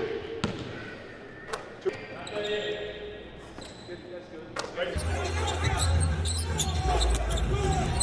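A basketball bouncing sharply a few times on a hardwood gym floor, with long gaps between bounces. About five seconds in, arena game sound takes over: a crowd murmur over a low hum.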